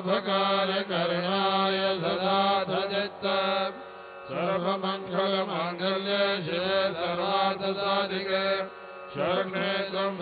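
Sanskrit mantras sung in a slow, melodic devotional chant, phrase after phrase, with short pauses about four and nine seconds in.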